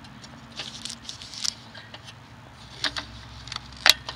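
Light clicks and taps of a rusty metal gas mask canister being handled, with a louder, sharper click near the end as the small lid of the spare-lens compartment is pressed shut.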